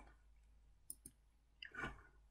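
Near silence with faint computer mouse clicks, two quick ones about a second in, and a short, soft sound near the end.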